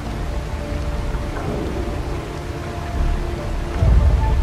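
Film soundtrack: steady heavy rain with a deep rumble that swells near the end, under soft held music.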